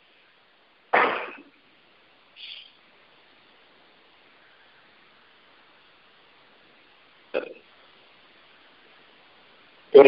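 Near silence broken by a short, loud throat sound from a man about a second in, a faint one a moment later, and another brief one about seven and a half seconds in.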